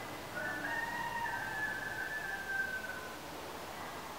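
A single long animal call, held for nearly three seconds, stepping down in pitch partway through and sinking slightly at the end, over a low background hiss.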